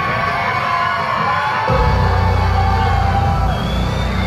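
Live rock band playing loudly through a club PA, heard from within the crowd, with the crowd cheering. The heavy bass and drums drop out briefly and come back hard just under two seconds in.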